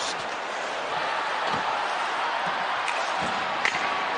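Steady noise of an ice hockey arena crowd, with a few faint sharp knocks of sticks and puck in the second half.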